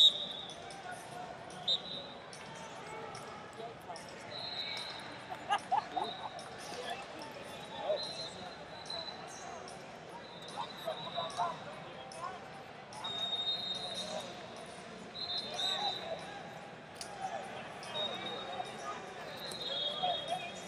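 Ambience of a busy wrestling arena: scattered distant shouting voices from coaches and spectators, short high squeaks from shoes on the mats again and again, and frequent sharp knocks.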